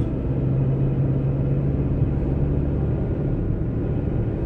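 A moving road vehicle's engine and road rumble heard from inside the cabin, a steady low hum that is strongest in the first two seconds.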